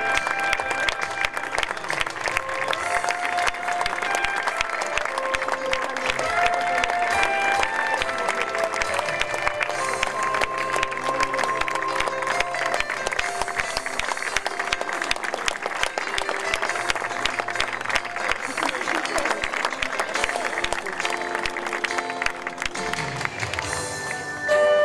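Audience applauding steadily over instrumental music with held notes.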